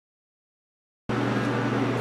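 Dead silence, then about a second in a steady low hum with an even hiss cuts in suddenly: the background drone of a machine or fan in a garage.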